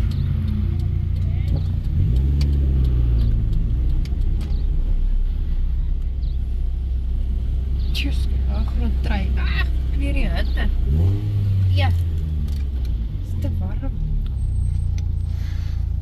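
Chevrolet Spark's small engine running on the move, heard from inside the cabin. Its steady low drone climbs in pitch a couple of seconds in and again later as the car accelerates. Voices talk over it in the middle and near the end.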